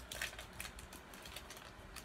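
Pokémon trading cards being handled, giving faint, scattered light clicks and rustles of card stock.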